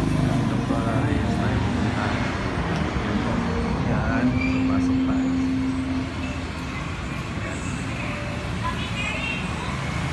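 Street traffic noise with vehicles running and people's voices in the background. A steady low tone is held for about a second and a half near the middle, and the noise drops quieter about six seconds in, once inside the building.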